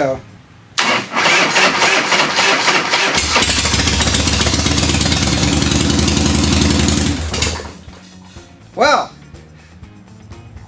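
Electric starter cranking a 1979 Harley-Davidson FXS Shovelhead's 80-cubic-inch V-twin, with the enricher on, for about two seconds before the engine catches. It runs steadily for about four seconds and then stops.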